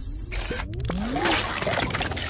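Synthetic sound effects of an animated logo intro: two sharp clicks and a few short rising swoops over a hissing whoosh.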